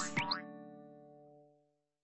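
Tail of a cartoon music sting: a quick springy boing slide about a quarter second in, then the last notes ring on and fade away by about halfway through.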